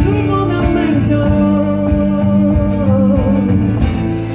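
A man singing long held notes into a microphone while strumming his guitar.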